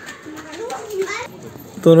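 Faint voices in the background, then a man's voice speaking loudly near the end.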